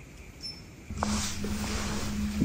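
A brief, faint high-pitched squeak of unknown origin about half a second in. From about a second in it gives way to a click, rustling movement noise and a steady low hum.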